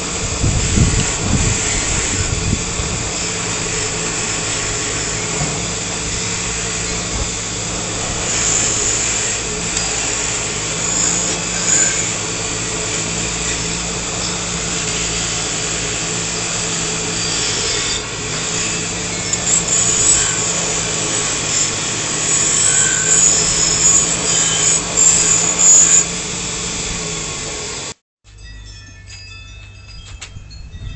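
Bench grinder running with a steel wrench held against its spinning wire wheel: a steady motor hum under a harsh scratching, rougher in stretches later on. It stops abruptly about two seconds before the end, giving way to quiet with light metal clinks.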